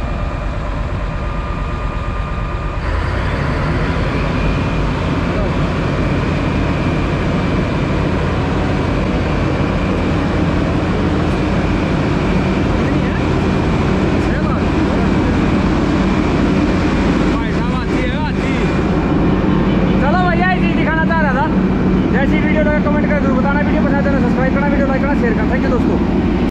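Wirtgen WR 2400 road recycler's twin-turbo 430 hp diesel engine running as the machine drives off. The engine grows louder about three seconds in, then holds loud and steady.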